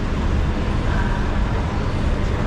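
Steady traffic noise with a low rumble from buses and cars at a covered station pick-up area.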